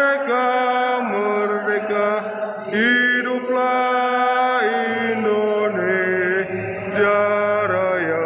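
A man's solo voice chanting over a public-address system in long, held melodic phrases, sliding into several notes and stepping between pitches.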